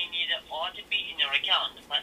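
Speech only: a person talking over a phone line on speakerphone, the voice thin and tinny.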